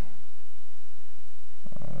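Steady low electrical hum on the recording with faint background hiss, no other distinct sound; a man's voice begins near the end.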